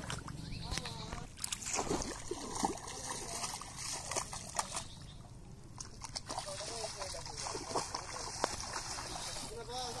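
Shallow muddy water splashing and sloshing irregularly around a man's legs as he wades, pushing a bamboo-framed fishing net through the water.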